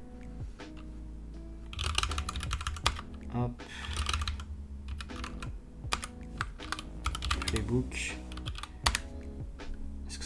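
Typing on a computer keyboard, keystrokes clicking in several short bursts with pauses between them.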